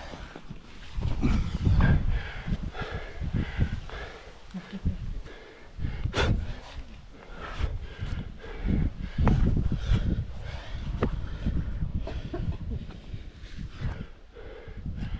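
A rock climber breathing hard in uneven bursts while hands, sleeves and shoes scuff against granite, heard close up from a helmet-mounted camera, with one sharp click about six seconds in.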